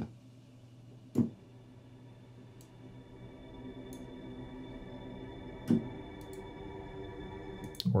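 A sustained, held tone from The Foundry sample instrument in Kontakt, sounding through its clay pot body impulse response, which colours the timbre. Two sharp clicks cut through it, one about a second in and a louder one near six seconds.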